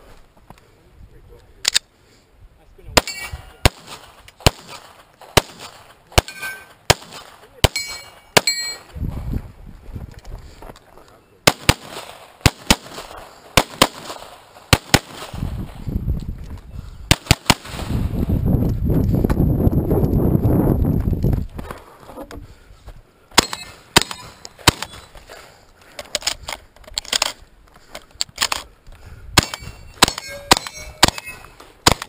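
Gunfire during a 3-gun course of fire: sharp single shots and quick strings of shots, some followed by the short metallic ring of hit steel targets. Shotgun shots come near the end. Past the middle there are a few seconds of low rumbling noise between the strings.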